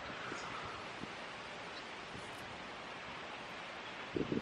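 Low, steady outdoor hiss of wind and rustling leaves, with no distinct events.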